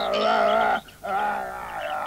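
Cartoon horse whinnying: two long, quavering calls with a short break just before a second in.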